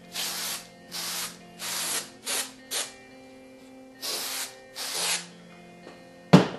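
Aerosol can of spray adhesive hissing in about seven short bursts, each a fraction of a second, with a longer pause after the first five.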